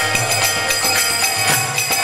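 Devotional bhajan music: a harmonium's sustained reed chords under a man's singing, a mridanga drum, and small metallic hand cymbals keeping a steady beat.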